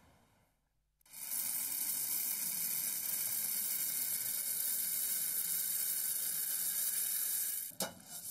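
A steady hiss, then near the end a single knock of a wooden pestle pounding coffee beans in a stone mortar.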